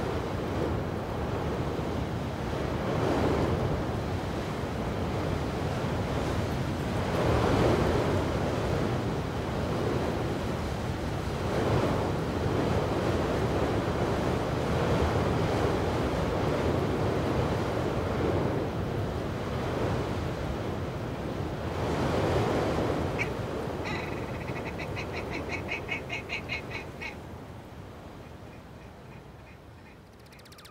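Sea waves breaking on a shore in slow swells every four to five seconds, with wind on the microphone, fading out near the end. In the last few seconds, a bird gives a rapid run of pulsed calls, several a second.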